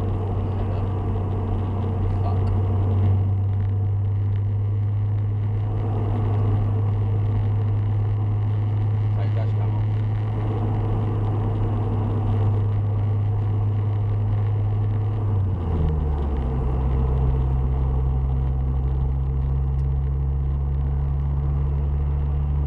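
Honda Civic Type R EP3's K20A four-cylinder engine droning steadily at motorway speed, heard inside the cabin over tyre and road noise. About fifteen seconds in, the drone changes pitch and settles on a new steady note.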